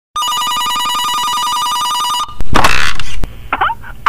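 A telephone ringing with a fast trill for about two seconds, which cuts off and gives way to a loud burst of noise lasting under a second. Short swooping pitched sounds follow near the end.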